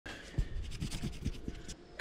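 Handling noise from a handheld camera being moved: irregular scratching and rubbing with small knocks.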